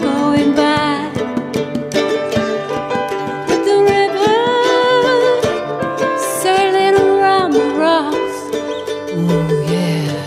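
Live acoustic music: plucked ukulele strings under a woman's singing voice holding long notes with vibrato.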